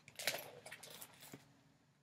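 Vinyl LP jackets in plastic outer sleeves rustling and sliding as one record is put aside and the next is lifted out, with a few sharper crinkles, then fading away.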